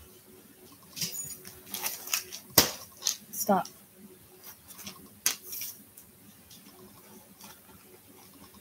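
A pet dog stirring beside the microphone: scattered light clicks and knocks, with one short whine about three and a half seconds in.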